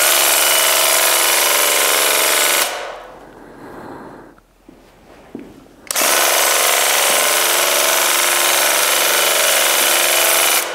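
Graco TC Pro handheld airless paint sprayer running with the trigger held, its piston pump buzzing hard as it sprays paint. It runs for about two and a half seconds, drops away, then starts again about six seconds in and keeps going.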